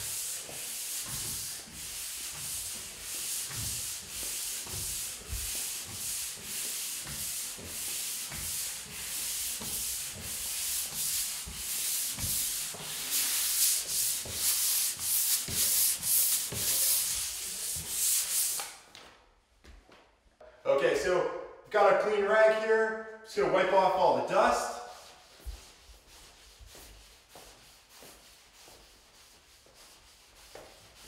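Drywall pole sander rubbing back and forth over a dried joint-compound seam in quick, even strokes, about two a second, stopping a little past halfway. After a short pause comes a brief pitched sound lasting a few seconds, then faint rubbing.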